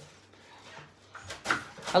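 A kitchen knife cutting through a savoy cabbage on a wooden cutting board. It is quiet at first, then there are a couple of sharper crunches as the blade goes through the leaves, about a second and a half in.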